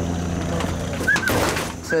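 A truck's engine idling with a steady low hum that stops shortly before the end, with a brief clatter about a second in.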